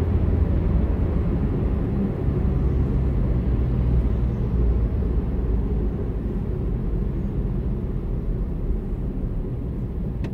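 Steady low rumble of a car's engine and tyres heard inside the cabin while driving in moving highway traffic.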